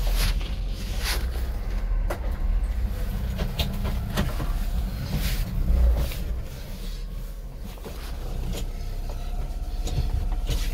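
Honda Acty mini truck's small three-cylinder engine running at low speed as the truck is manoeuvred, heard from inside the cab, with scattered knocks and clicks over the steady low rumble.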